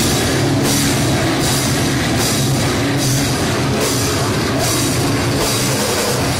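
A metalcore band playing live and loud: heavy guitars and bass over a drum kit, with cymbal accents landing about every 0.8 seconds in a steady pounding pattern.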